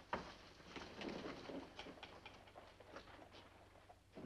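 Quiet room with faint, scattered soft clicks and rustles of a person moving about and handling things.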